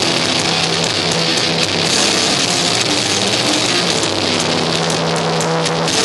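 A blackened death metal band playing live and loud, with distorted electric guitars and bass holding long low notes over a steady wash of cymbals.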